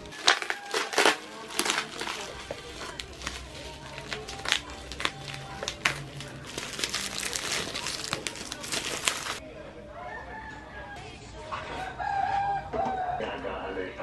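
Bubble wrap and plastic packaging crinkling and crackling in sharp, irregular bursts as it is pulled open by hand. About nine seconds in it stops abruptly, and a duller stretch follows with a few wavering pitched calls near the end.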